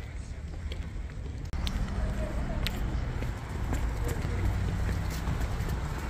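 Outdoor ambience on a phone microphone: a steady low rumble of wind buffeting the mic, with faint voices and footsteps of people walking on paving. The level jumps up abruptly about a second and a half in.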